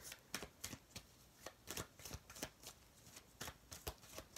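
Tarot cards being shuffled by hand: faint, irregular light clicks and slaps of card on card, about four a second.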